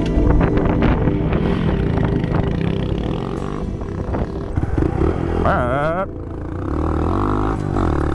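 A Honda Monkey 125's single-cylinder engine running as the bike rides along a dirt trail, mixed with background music.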